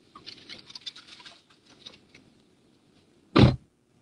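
Rustling and small clicks of someone climbing out of a car, then a car door shutting with one heavy thump about three and a half seconds in, heard from inside the cabin.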